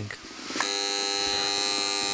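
Goblin Teasmade's alarm buzzer sounding, a steady electric buzz that starts about half a second in: the signal that the tea is made.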